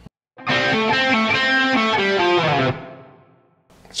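Les Paul-type electric guitar playing a short blues-rock fill of single notes for about two seconds, the last notes left to ring and fade away.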